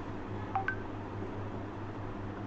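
Two short electronic beeps about half a second in, a lower tone followed quickly by a higher one, over a steady low hum.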